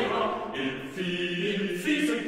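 Choral music: several voices singing together in sustained notes.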